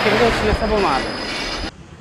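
Steady road-traffic noise from a busy street, with a man's voice briefly mixed in, cutting off sharply near the end.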